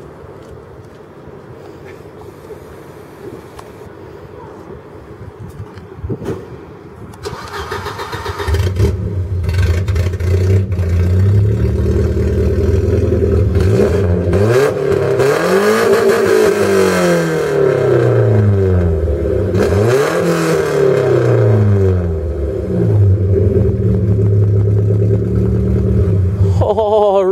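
Volvo engine on an open, roughly two-inch straight-pipe exhaust with no muffler, cold-started about a third of the way in after a brief crank, then idling loudly. It is revved hard twice, each rev rising and falling in pitch, before settling back to a steady idle.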